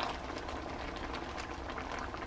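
Shrimp simmering in sauce in a frying pan: a steady bubbling with many small pops.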